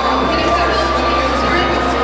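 Babble of many voices from a crowd in a large room, with a steady high whistling tone running under it.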